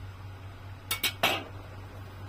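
Kitchen utensils and dishes clinking, three quick sharp clinks about a second in, over a steady low hum.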